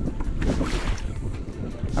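Wind buffeting the microphone out on open water: an uneven low rumble that rises and falls.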